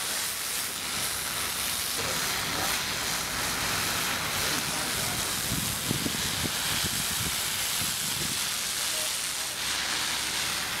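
Steady hiss of water jetting from a firefighter's hose onto a wrecked car. Low, indistinct voices come in around the middle.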